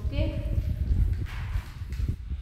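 Scuffs and soft thuds of a barefoot child shifting and getting up from sitting on an exercise mat, over a low rumble of movement, with a brief bit of voice at the start.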